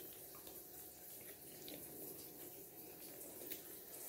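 Quiet room with a faint steady hum and a few faint, scattered clicks of a blue-and-gold macaw's beak picking at a pecan shell.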